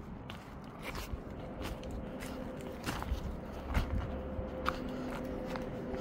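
Faint footsteps crunching on the ground, with scattered short clicks throughout.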